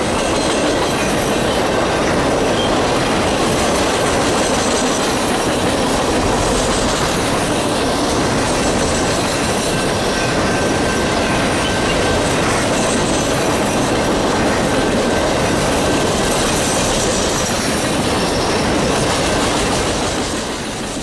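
Triple Crown RoadRailer train rolling past at a steady speed: the trailers ride on rail bogies, and their steel wheels on the rail make a continuous loud rumble with clickety-clack, unchanged throughout.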